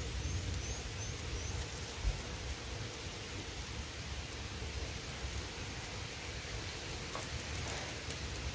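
Steady low hiss of outdoor background noise, with a single soft tap about two seconds in.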